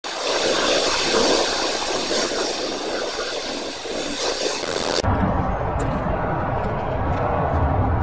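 An even hiss-like intro sound plays for about five seconds and cuts off suddenly. Low rumble follows, typical of wind on a phone microphone outdoors.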